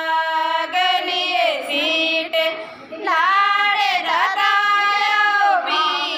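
A woman singing a folk song without accompaniment in a high voice, holding long notes that bend and slide in pitch, with a short breath-pause about halfway through.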